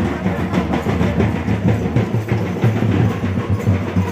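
Dance drums beating a steady, even rhythm of several strokes a second, with other music mixed in.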